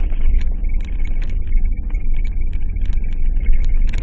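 Vehicle cabin noise on a rough gravel track: a steady low engine and road rumble with frequent short knocks and rattles from the bumps, and a faint thin high whine running through.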